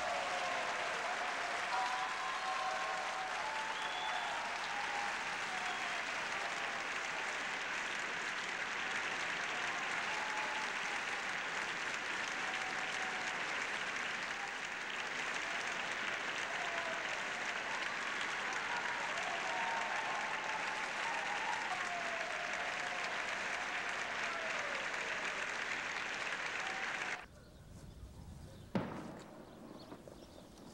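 An audience applauding steadily for about 27 seconds after a band's song, then cutting off abruptly to a much quieter background with one brief sharp sound near the end.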